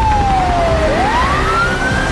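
A siren wailing: one tone slides down in pitch for about a second and a half, then sweeps back up, over a low rumble.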